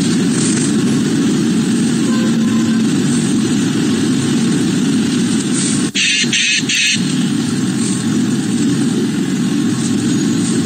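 Car cabin noise from a dashcam recording in city traffic: a steady low engine and road rumble. A short burst of hiss comes about six seconds in.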